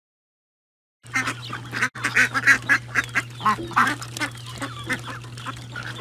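Flock of domestic ducks quacking over and over, starting about a second in, with a steady low hum underneath.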